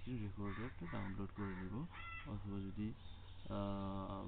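Narrator speaking Bengali in short phrases, ending in one long held, level-pitched vocal sound near the end, over a steady low hum.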